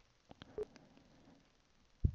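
Near silence: faint room tone with a few soft, short clicks in the first second.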